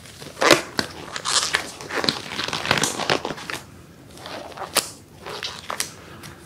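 Thin disposable plastic gloves crinkling and rustling as they are pulled onto the hands, in a run of crackly bursts with a short lull about four seconds in.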